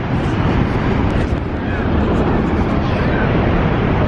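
Steady heavy roar of Niagara Falls' falling water and spray, with wind buffeting the camera microphone: a deep, even rumble that does not let up.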